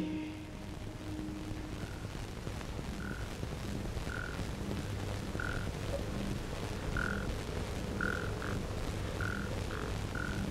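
Frogs croaking on a night-time ambience track: short calls of the same pitch, about one a second, over a low steady hum.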